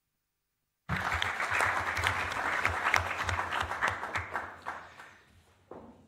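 Audience applauding. The applause starts abruptly about a second in after a dead-silent gap, then dies away over the last couple of seconds.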